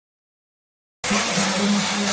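Steam cleaner hissing as its jet of steam blasts out, cutting in suddenly about a second in, with a steady low hum from the machine underneath.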